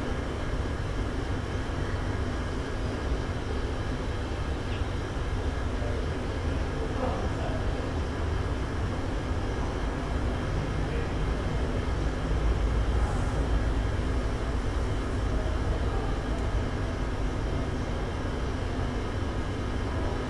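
Steady low rumble of a large cargo ship passing by, swelling a little just past the middle.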